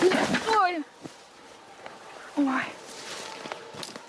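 Someone running hard through forest undergrowth, brush swishing against her, which stops abruptly about a second in with a short falling cry: the runner has fallen and hurt her knee. A pained "oy" follows.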